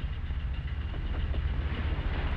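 Steady low rumble of a car running, heard from inside the cabin.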